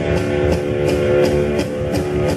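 Rock band playing: electric guitar over a drum kit, with cymbal strokes about three times a second.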